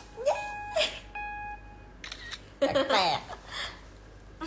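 A party horn blown in two short, steady, single-pitched toots, the second a little longer, among cheering and chatter.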